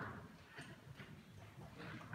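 A quiet pause with no music, only a few faint scattered clicks and knocks over low room sound.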